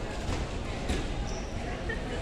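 Ambient noise of a busy airport baggage reclaim hall: a steady hum of background voices with a few sharp thuds, the loudest about a second in.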